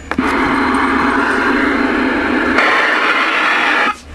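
Loud, steady hiss of CB radio static from the speaker, with a low hum under it. About two and a half seconds in the hum drops out and the hiss turns brighter, then it cuts off just before the speech resumes.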